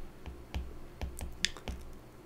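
Light, irregular taps and clicks of a stylus on a tablet's glass screen during handwriting, several faint ticks over two seconds.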